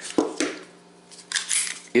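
Metallic handling clicks from a Walther Creed 9mm pistol and its steel magazine: a sharp click shortly in, a brief scrape in the second half, and another sharp click at the very end.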